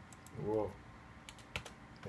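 A few scattered clicks of a computer keyboard, irregular and light, with a brief murmured voice about half a second in.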